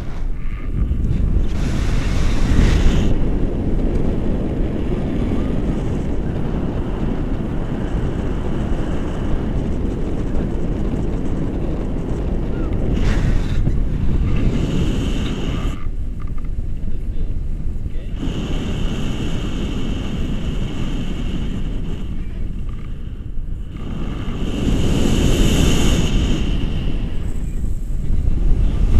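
Wind buffeting the microphone of a selfie-stick camera in paraglider flight: a loud, steady rumbling rush that swells and eases, with two short lulls in the second half.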